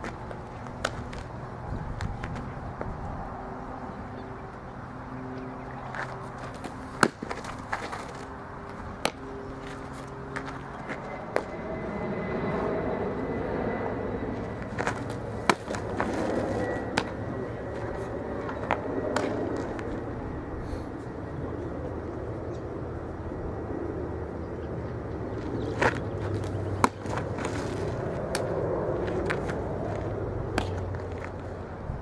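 Softballs smacking into leather fielding and catcher's mitts as the ball is thrown around the infield: sharp pops a handful of times, the loudest about 7, 15 and 26 seconds in, over a steady outdoor background noise.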